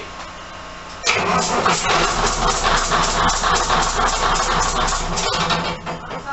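A railcar's underfloor diesel engine starts about a second in and runs loudly, with a fast, even pulsing, until the sound drops away near the end.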